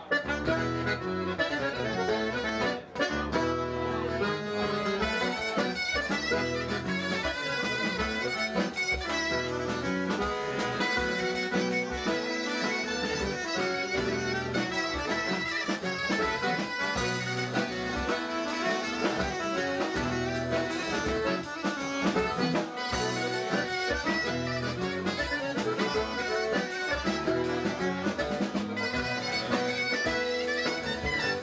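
Live Breton fest-noz dance music: reed instruments carry the tune over acoustic guitar strumming, with a steady dance beat and a brief break about three seconds in.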